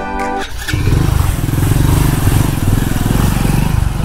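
Background music stops about half a second in and a motorcycle engine takes over, running loudly and evenly as the bike rides off.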